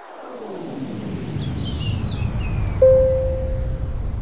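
Animated intro's sound design: a swelling whoosh that builds steadily, with faint falling sparkle tones high up, and a single held note coming in about three seconds in.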